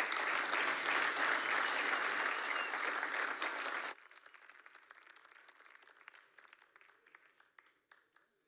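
Audience applauding, a dense clapping that stops abruptly about four seconds in, leaving only faint scattered clicks that fade away.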